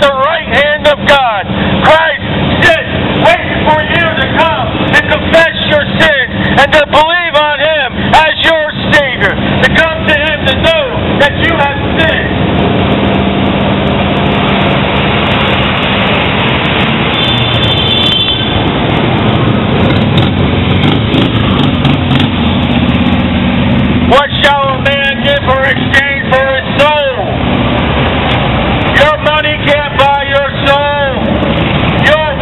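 Passing street traffic, cars and motorcycles, heard from the curb as a steady engine and road noise. A loud voice preaches over it for the first dozen seconds and again near the end. In the quieter stretch between, a brief high tone sounds about halfway through.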